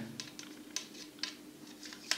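Faint, scattered clicks and light scrapes of a steel replacement saw blade being slid into and seated in a plastic saw handle, about half a dozen small ticks.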